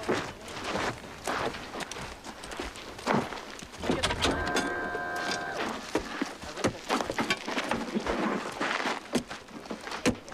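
Equipment being handled around an open-frame vehicle: a run of thunks, knocks and clatter. A short steady electronic tone of several pitches sounds about four seconds in, lasting just over a second.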